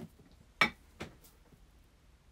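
Small objects set down on a desk: a soft knock, then two sharp clicks about half a second apart, the first the loudest.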